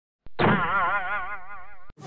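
Cartoon boing sound effect: a springy, wobbling twang that lasts about a second and a half and drifts slightly down in pitch.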